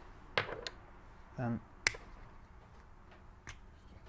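Faint plastic clicks from a Ford Fiesta remote key fob being handled as its blade is taken off and its plastic case is prised open, with one sharp snap about two seconds in.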